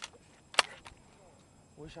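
Shotgun shots over a swamp: a sharp report right at the start and a louder one a little over half a second in. These are the shots that finish off a teal limit.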